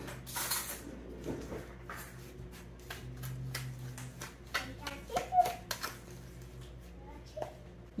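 Metal spoon stirring crushed pork rind crumbs in a plastic container, with irregular clicks and scratchy scrapes of the spoon against the container.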